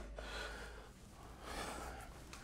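Quiet room tone with faint breathing close to the microphone, swelling slightly twice.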